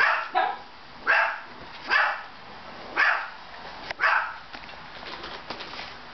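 A dog barking, about five short barks roughly a second apart, stopping about four and a half seconds in.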